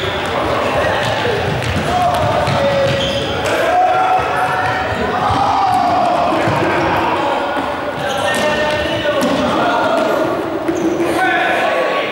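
A group game on an indoor sports-hall court: running footsteps and ball bounces on the floor, mixed with shouting voices, all echoing in the large hall.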